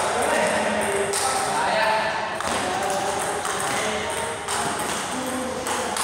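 Table tennis rally: the ball clicking off the paddles and bouncing on the table, with voices talking in the hall.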